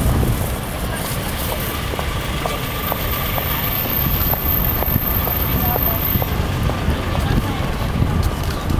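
Busy city street ambience: many passers-by talking, over a steady low traffic rumble, with a faint, even ticking about twice a second through the middle.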